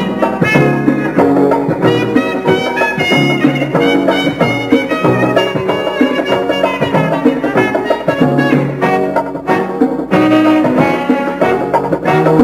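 Instrumental break in a calypso song, with a brass section playing the melody over a steady dance beat.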